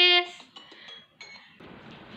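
A young girl's voice holding a loud sung note that cuts off just after the start, followed by faint clicks from handling a phone and its earphone cable.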